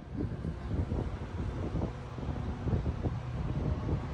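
Wind buffeting the microphone: an uneven low rumble that swells and dips.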